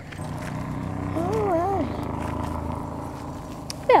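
A steady engine hum that swells over the first two seconds and then fades, with a faint voice heard briefly about a second in.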